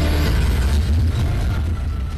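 Engines of 1950s stock cars racing, a steady low rumble with film hiss from an old newsreel soundtrack.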